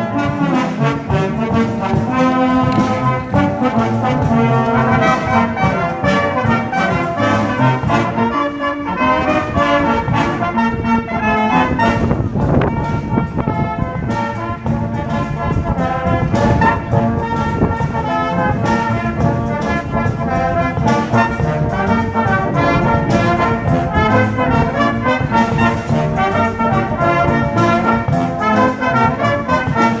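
A full brass band playing a piece together, with sustained chords and a moving melody line over a bass part.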